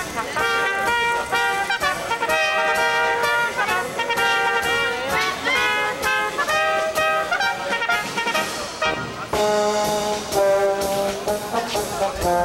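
A small brass band playing live, with tubas and trumpets: a rhythmic tune of held chords with notes changing in step. Lower bass notes join in about nine seconds in.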